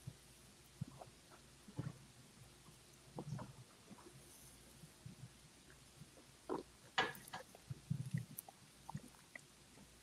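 Faint, scattered mouth sounds of people tasting whiskey: sips, swallows and breaths, more frequent in the second half, with a few short sharper knocks about seven seconds in.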